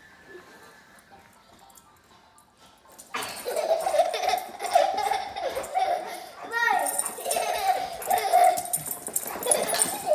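Toddler laughing and squealing during rough play with a dog, beginning about three seconds in after a quiet stretch and running on in loud, broken bursts.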